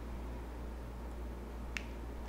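A steady low electrical hum with a single sharp click near the end.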